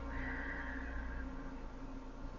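Soft meditative background music of sustained, bell-like tones. Just after the start, a higher sound sliding slightly down in pitch lasts about a second.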